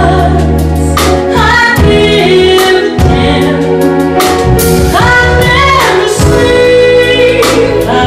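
A woman singing a song live with a jazz combo accompanying her: piano, bass and drums, with cymbal strikes through the phrases. Her voice slides up in pitch about a second in and again around five seconds in.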